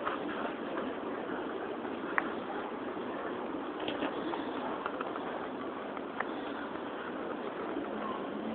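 Steady outdoor background hubbub of people and distant traffic, with a few light clicks scattered through it, the sharpest about two seconds in.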